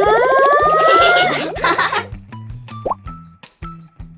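Cartoon sound effects over light background music with a repeating beat: a long rising buzzy tone over the first second or so that ends in a short noisy burst, then a quick upward plop-like glide about three seconds in.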